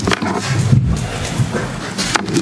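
Office chair being pulled back and sat in at a table, with a couple of sharp knocks at the start, a low scrape or creak in the middle and another knock at the end.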